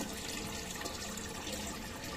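Steady running water with a light trickle, the constant water noise of a turtle tank.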